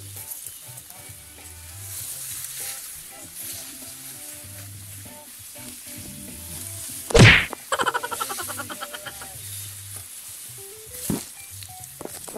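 Tall grass and leaves brushing and crackling against the phone and its holder while walking through dense undergrowth. About seven seconds in a leaf or stem knocks hard against the microphone, the loudest sound, followed by about a second of rapid scraping rattle. A smaller knock comes near the end.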